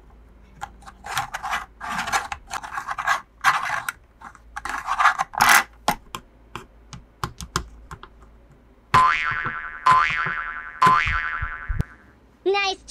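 Packaging being handled and unwrapped, giving short irregular crinkling and rustling bursts. These are followed near the end by three ringing, pitched boing-like tones about a second apart, each dying away.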